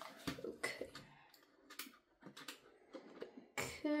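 A few irregular light clicks and knocks from a mantel clock being handled and turned over in the hands, with quiet between them.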